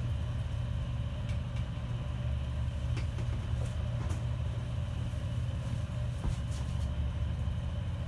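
Steady low machinery drone of a ship's engines, with a few faint knocks scattered through it.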